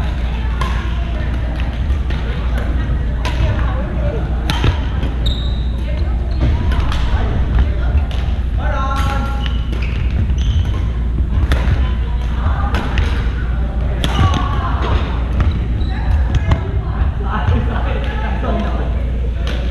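Badminton rackets hitting a shuttlecock in rallies: sharp, irregular cracks, several from other courts, echoing in a large gym. Shoes squeak and patter on the hardwood floor and voices carry in the hall, over a steady low hum.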